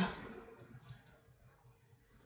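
A few faint, light clicks of paper sticker sheets being handled on a tabletop, followed by near silence.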